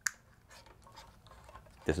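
A single sharp click as a plastic wiring-harness plug snaps into its mating connector, followed by faint rustling of the cables being handled.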